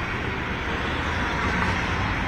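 Steady background noise from an open live broadcast feed, an even rushing hiss with no voice in it.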